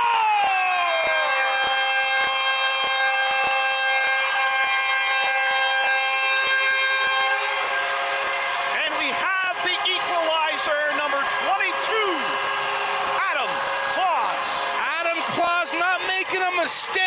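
Arena goal horn marking a goal: a short falling sweep, then a steady multi-note blare held for about seven seconds, over crowd noise and knocks. In the second half it gives way to voices shouting and cheering.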